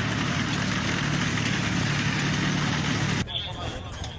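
Tank engine and tracks running as the tank drives across open ground: a loud, steady noise with a low hum, which cuts off abruptly about three seconds in, leaving a quieter background.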